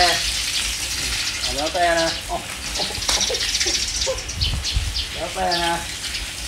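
Garden hose running, its stream splashing steadily onto grass and paving stones.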